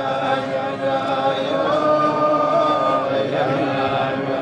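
A group of men singing a slow melody together, holding long notes; one note is held for over a second in the middle.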